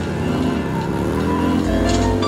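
Harley-Davidson Sportster's V-twin engine revving hard in a burnout, its pitch rising through the middle, mixed with music.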